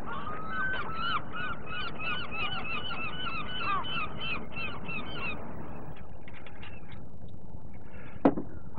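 Gulls calling in a rapid series of arched cries, about three a second, over a steady background hiss. The cries fade out a little past halfway.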